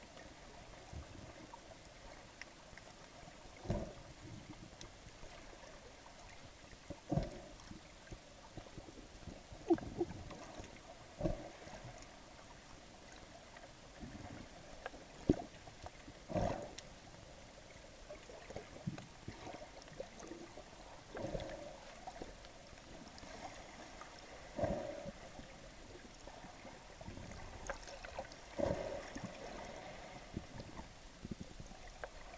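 Muffled underwater sound picked up from inside a sealed waterproof camera housing: a faint steady hum with irregular soft knocks and swishes every one to four seconds as water moves around the housing while swimming.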